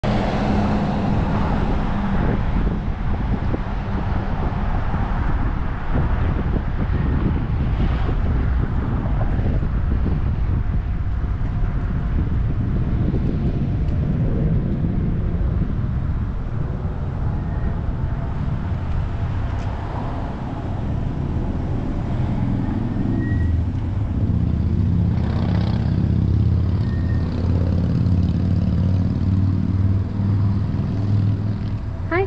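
Car driving slowly, with engine and road noise. From about three-quarters of the way in, the engine's hum turns steadier as the car slows and idles.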